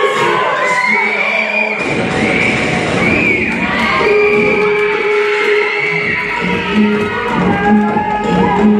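Loud music for a hip-hop dance routine: sustained tones and sweeping glides, with a heavy bass coming in about two seconds in.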